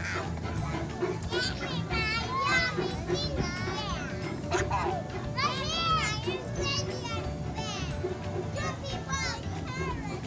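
Several children's voices calling and squealing in short, high-pitched calls that rise and fall, over steady background music.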